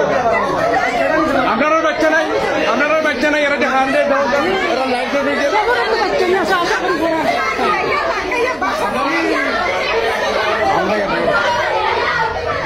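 Several people talking loudly at once, their voices overlapping in a tense argument.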